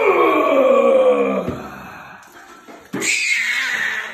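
A man's loud, drawn-out yell that falls steadily in pitch over about a second and a half, then a shorter, higher-pitched cry about three seconds in.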